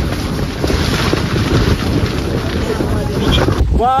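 Strong wind gusting against a tent, heard from inside it, with heavy wind rumble on the microphone. It cuts off abruptly near the end, where a shouted voice begins.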